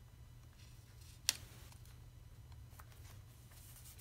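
Quiet handling of paper stickers being pressed onto a planner page, with faint small ticks and one sharp click a little over a second in, over a steady low hum.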